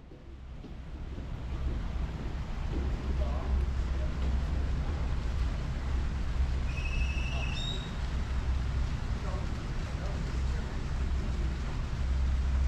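Outdoor ambience: a steady low rumble of wind on the microphone, with faint background voices. A short, high chirp sounds about seven seconds in.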